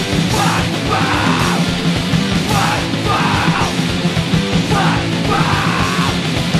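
Punk rock song with shouted vocals over a full band of guitars, bass and drums; the shouted lines come in short phrases about every two seconds.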